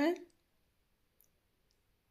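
The end of a spoken word, then near silence with two faint, tiny clicks about half a second apart.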